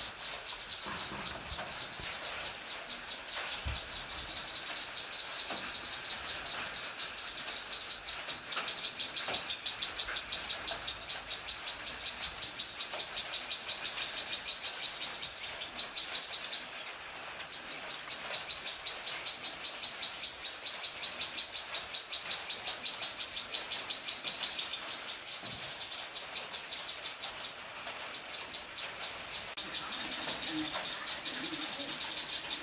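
Common tailorbird calling: a long run of fast, evenly repeated high chirps, breaking off briefly about halfway and starting again.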